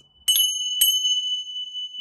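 Tingsha cymbals struck together twice, about half a second apart, each strike leaving a high, steady ringing tone that carries on.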